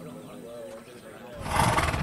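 A horse snorts once, a short rough blow through the nostrils, about one and a half seconds in.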